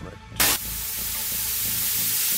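A loud, even hiss like radio static or a spray of steam, starting suddenly about half a second in and holding steady: a sound effect in a comedy radio play, with a quiet music bed underneath.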